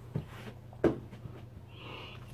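A man's short, hard exhales as he starts a set of push-ups, two of them, the second louder, followed by a hissing intake of breath near the end.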